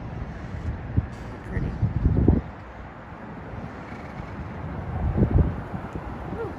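Wind buffeting the phone's microphone in two low gusts, about two seconds in and again around five seconds in, over a steady hum of distant highway traffic.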